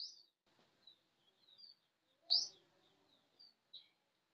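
Faint, short, high chirps of small birds, repeating several times, with the loudest chirp about two seconds in.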